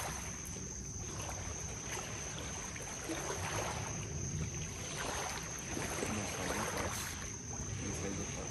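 Small waves lapping and splashing against a rocky river shoreline, with wind rumbling on the microphone.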